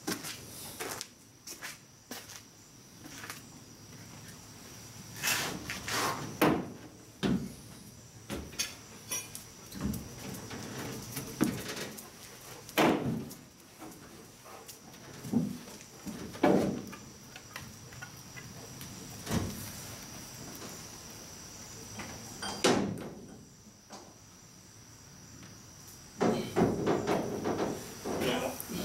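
Irregular knocks, clunks and footfalls of someone climbing into a pickup truck's bed and moving about on it, shifting metal gear. A steady high chirring of night insects runs behind.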